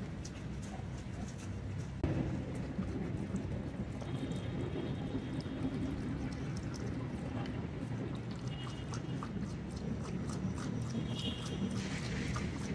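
A dog's paws ticking faintly on stone paving and the dog drinking from a water bowl at the end, over a steady low outdoor hum.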